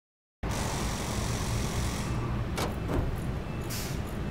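Car-repair garage noise: a steady hiss over a low rumble that eases after about two seconds, then two knocks and a short burst of hiss near the end.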